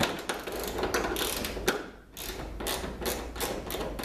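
Ratcheting wrenches clicking as the nut is worked off the rear-spar wing-attach bolt, in quick runs of clicks with a short pause about halfway.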